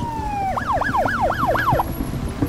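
Police car siren: a falling wail switches about half a second in to a fast yelp, sweeping up and down about four times a second, and cuts off shortly before the end.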